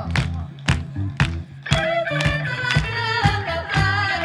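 Live funk/acid-jazz band playing: a steady drum beat of about two hits a second over a bass line, with a singing voice coming in a little under two seconds in.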